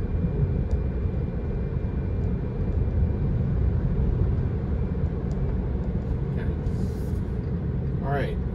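Steady low road and tyre rumble heard inside the cabin of a moving Tesla electric car, with no engine note.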